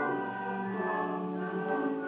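A hymn played on organ, with singing voices over it. Held chords change about once a second.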